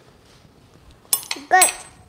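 A metal spoon clinks once about a second in, with a short high ring, against a quiet kitchen background.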